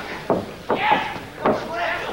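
Voices from a ringside crowd shouting and calling out, with three sharp knocks in two seconds from the grappling on the ring mat.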